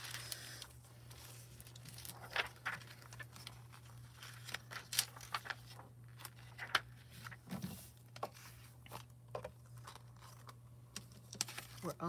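A thin sheet of gold transfer foil being handled and laid over cardstock, crinkling and rustling in small, irregular crackles.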